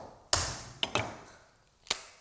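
Knife striking through a cooked lobster's shell onto a cutting board: one sharp knock that rings briefly, two lighter taps, then another sharp knock near the end.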